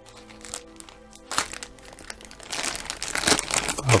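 Clear plastic packaging bag and foam wrap crinkling as they are handled and pulled apart. The crinkling is sparse at first and grows denser and louder in the second half. Soft background music with held notes sounds under the first second or so.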